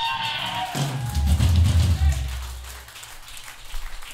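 A live hardcore band's song ending in a club: the guitars fade out in the first second, then a low bass guitar note rings for about two seconds and dies away, leaving only faint crowd noise.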